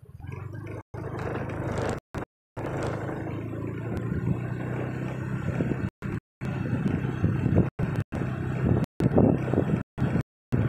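Car engine running and road noise from inside the cabin as the car drives slowly and picks up a little speed, getting somewhat louder in the second half. The sound cuts out to dead silence for a moment about ten times.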